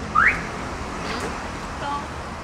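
A single short, loud rising chirp of a car alarm as a car is locked or unlocked by remote, just after the start. It plays over a steady low outdoor rumble.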